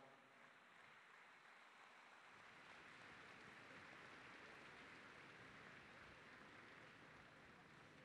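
Faint applause from a large seated audience, a steady patter that swells a little in the middle and eases off towards the end.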